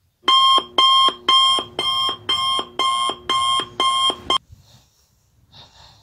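Electronic wake-up alarm beeping loudly in an even repeating pattern, about two beeps a second, each beep a short electronic tone with a lower note at its end. It stops suddenly about four seconds in, leaving only faint small sounds.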